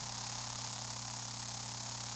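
Steady hiss over a low mains hum from an open audio channel, with no voice coming through: the phone voice note being put on air fails to play.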